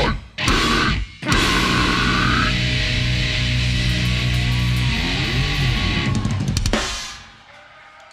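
Heavy live band (drum kit, distorted guitars and bass) stopping dead twice in quick succession, then crashing back in on a final held chord with cymbals ringing, which is cut off about seven seconds in to end the song.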